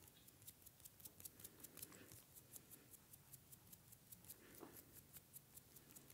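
Fingertips quickly tapping and patting on the skin of a face during a hand massage: faint, rapid light taps, several a second.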